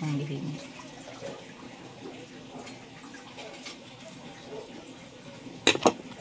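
Faint kitchen background with a tap's water noise, then two sharp clinks close together near the end, from a spoon against dishware.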